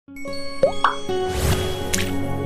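Intro sting of music and sound effects: held synth tones under two quick rising pops less than a second in, then a swelling whoosh that ends in a sharp hit.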